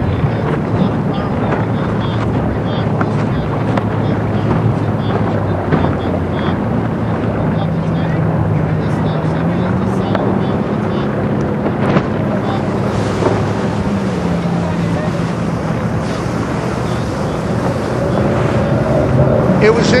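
Motorboat engine running steadily over wind on the microphone and water noise. The engine's pitch rises about halfway through and falls back a few seconds later.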